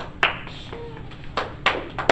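A few scattered hand claps, about four sharp separate claps over two seconds rather than continuous applause.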